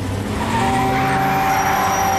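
A motor vehicle's engine and road noise swelling up and holding steady, with a slowly rising engine note and a steady high tone over it.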